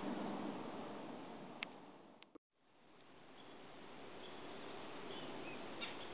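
Faint outdoor woodland ambience with a few faint bird chirps in the second half. It fades out to a moment of silence about two and a half seconds in, then fades back in.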